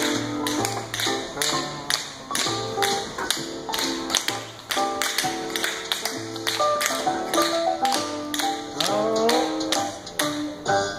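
Tap shoes striking a concrete floor in a tap dance routine, in quick runs of sharp clicks over recorded music.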